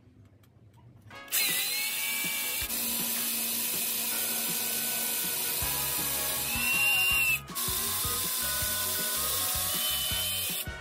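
Cordless drill with a 3 mm bit drilling out the steel roll pin that holds the worn wastegate bushing in an IHI RHF5 turbocharger's turbine housing. The motor spins up about a second in and runs steadily, stops briefly about seven seconds in, then starts again.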